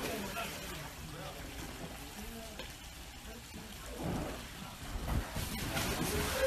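Pool water sloshing and splashing as people wade through it, with indistinct voices in the background.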